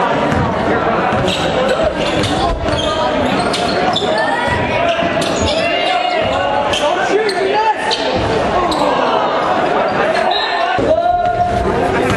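Basketball dribbling on a hardwood gym floor under steady, dense crowd chatter, echoing in a large hall.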